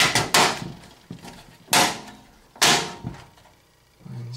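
Sharp knocks and clunks of parts being fitted against a steel computer case: about five hits with short ringing tails, the last two close together.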